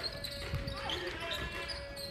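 Live basketball court sound in a large gym: a ball bouncing on the hardwood about half a second in, thin sneaker squeaks, and faint shouts from players and benches.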